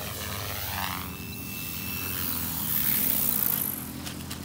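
Electric RC helicopter (MSH Protos 380) in flight: main rotor whirring with a thin motor whine, growing louder in the last second or so, then dropping off just before the end.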